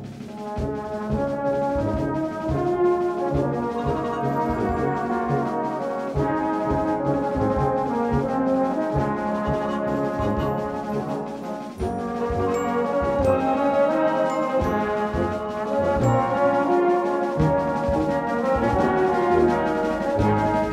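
A brass band plays a full-harmony passage, held chords over a steady bass line, with a brief break between phrases about twelve seconds in.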